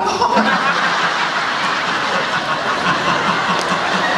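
Audience laughing together, a steady mass of laughter that swells about a third of a second in.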